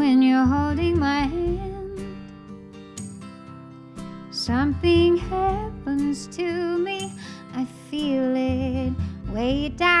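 A woman singing a ballad, holding long notes with vibrato, over a soft instrumental accompaniment with deep bass notes that come in about every four seconds.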